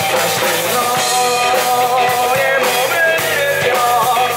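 Live rock band playing a song on drum kit, bass and guitars, with a male lead vocal singing over it.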